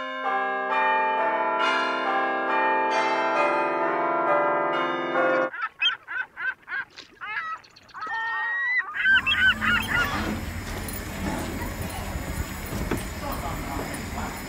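Tower bells chiming, several notes struck one after another and left ringing for about five seconds. Then a run of goose honks for a few seconds, and from about nine seconds in, outdoor open-air noise with a few more honks and faint voices.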